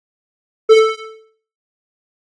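A single pitched note played back from a recording track through a noise gate set to a high threshold. It starts sharply about a second in and is cut short after about half a second: the gate lets through only the loud start of the note and then closes. Silence around it.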